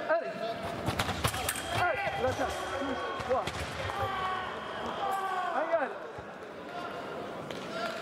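Sabre fencing action: a quick run of sharp clicks and knocks from footwork on the piste and blades meeting in the first second and a half, then several loud shouts over the next few seconds as the touch is scored.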